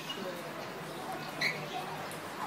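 Faint background of distant voices over a low hiss, with one short high chirp about a second and a half in.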